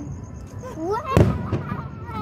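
Aerial fireworks shell bursting with one sharp, loud bang about a second in, among other fireworks going off.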